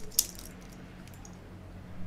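Stainless steel watch bracelet clinking lightly as it is handled: a couple of short metallic clicks near the start, then quiet room tone.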